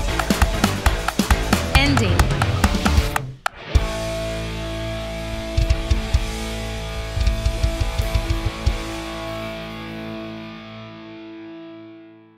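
Worship band with drums and electric guitars playing the song's ending, stopping suddenly about three seconds in. A final held chord then rings on, with scattered drum hits over it, and fades away near the end.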